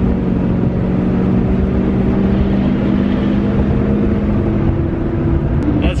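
Diesel pickup truck engine pulling under load with a steady drone and road noise, heard inside the cab, as the truck accelerates to pass another vehicle; the engine note eases off and drops about five seconds in.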